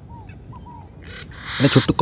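A few faint, short bird chirps in the first second, then a burst of hiss about a second in and a man's voice near the end.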